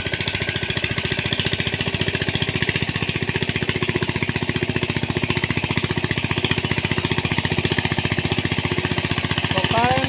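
Single-cylinder diesel engine of a walk-behind power tiller running steadily under load as it works a flooded paddy field, a fast, even putter.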